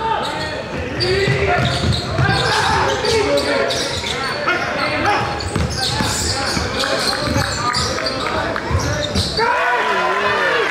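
Basketball dribbled on a hardwood court, repeated thumps, with many short sneaker squeaks and voices from players and spectators in the gym.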